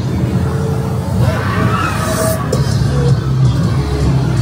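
Haunted-house soundtrack: a loud, steady low rumble under eerie music.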